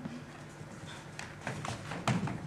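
Footsteps on a wooden stage floor: a few sharp clicking steps in the second half.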